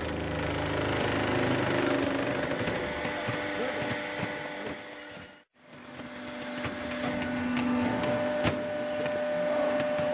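Hydraulic power unit of a CK600HFEPC cardboard baler running with a steady hum and whine while the portcullis door lifts, with a few light clicks. The sound fades out and back in about halfway through.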